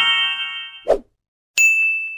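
Subscribe-button animation sound effects: a chime of stacked tones held until nearly a second in, a short click, then a single notification-bell ding that rings on and fades.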